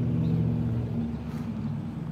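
A motor vehicle's engine running with a steady low hum, fading away over the last second.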